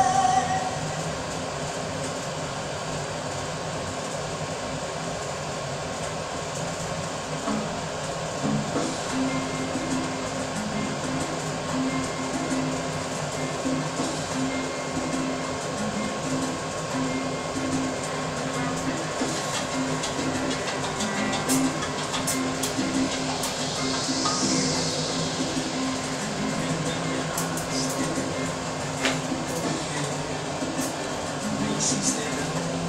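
Electric hair clippers buzzing steadily, stronger from about eight seconds in, muffled by cloth over the microphone, with music playing in the background.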